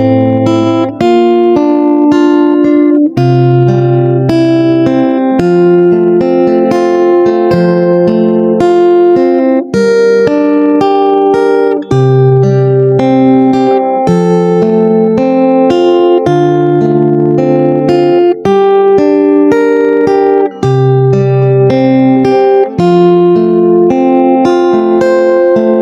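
Acoustic guitar playing an instrumental break: a picked melody over low bass notes that change about every two seconds.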